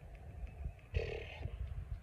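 A woman's brief, soft, throaty hum about a second in, over a faint low rumble.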